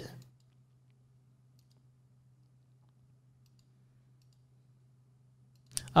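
Near silence with a low steady hum and a few faint computer mouse clicks.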